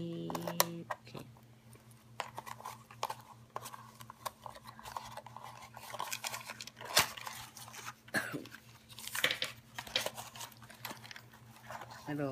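Children's scissors snipping the tape on a cardboard toy box, then the box being pulled open and a plastic toy engine and cardboard insert handled: scattered snips, clicks and rustles, over a steady low hum.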